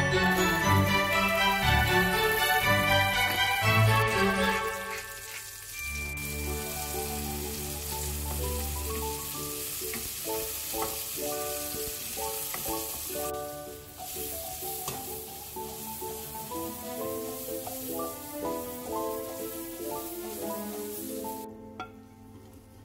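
A garlic clove and diced zucchini frying in olive oil in a pan, a steady sizzle under background music. The sizzle stops shortly before the end, and the music is loudest in the first few seconds.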